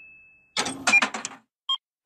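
Cartoon vending-machine sound effects: a fading chime ring, then a quick clatter of rattling knocks, then one short electronic beep near the end.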